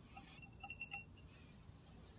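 Faint, light metallic clinks as a small trial weight is removed from a fan balancing rotor's metal disc: a few small ticks, the loudest just before one second in.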